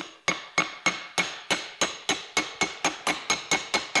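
A small hammer taps a metal seal installing tool in a quick, even run of about four strikes a second, each with a short metallic ring. The tool is driving a new grease seal into a brake rotor hub.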